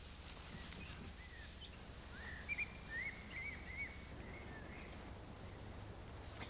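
Faint bird chirps, a short run of quick rising-and-falling notes about two to four seconds in, over a low steady background hum.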